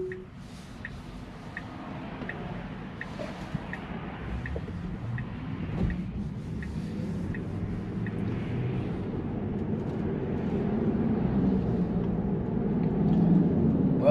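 Cabin of a Tesla electric car turning onto a road and gathering speed: the turn-signal ticks evenly, about three ticks every two seconds, for the first half, over road and tyre noise that grows steadily louder.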